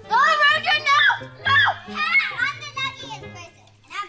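A young child's high-pitched voice calling out in short bursts over background music, pausing briefly near the end.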